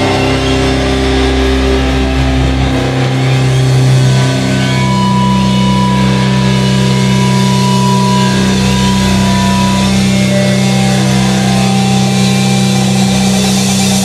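Live rock band's amplified electric guitars and bass holding long, droning notes with no drum beat. The low notes shift about three seconds in, then sustain steadily.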